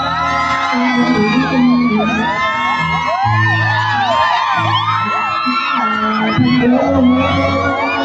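Live amplified pop performance: a male singer over a backing track with a steady bass line, nearly buried under a crowd of fans screaming in many overlapping high, rising-and-falling cries.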